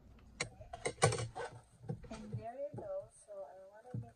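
A quick run of sharp clicks and knocks as scissors and paper are handled on a craft table, loudest about a second in, then a voice without clear words for the last second and a half, and a single thump near the end.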